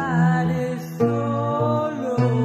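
Acoustic band music: a woman's voice sings long, gliding notes over acoustic guitar and bass guitar.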